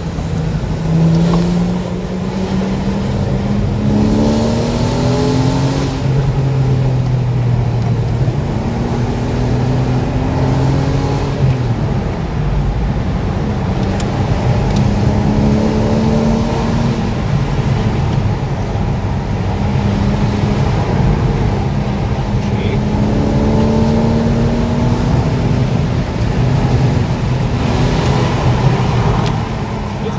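Porsche Boxster 986S's 3.2-litre flat-six engine heard from inside the cabin while driving. It climbs in pitch several times as the car accelerates and settles or drops back in between.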